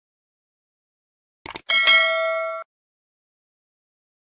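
Two quick clicks, then a bright notification-bell ding of several tones that lasts about a second and cuts off suddenly. It is the bell sound effect of a subscribe animation, marking the notification bell being switched on.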